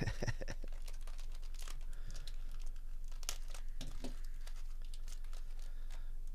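Silver foil wrapper of a trading-card pack crinkling and tearing as it is peeled open by hand, in scattered small crackles, with a steady low hum underneath.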